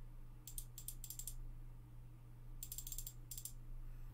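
Two quick runs of faint, rapid clicking from a computer mouse, about half a second in and again near three seconds, as a value is adjusted in the software. A faint, steady low hum lies underneath.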